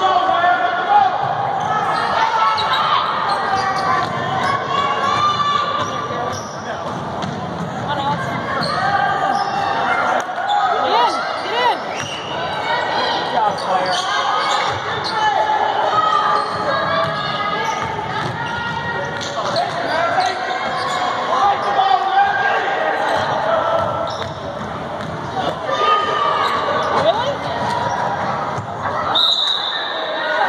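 A basketball being dribbled and bouncing on a hardwood gym floor during a game, under continual voices and shouts from spectators and players. The sound echoes around a large gymnasium.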